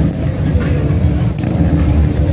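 A 1960s Chevrolet lowrider's engine running steadily at low speed as the car rolls slowly past.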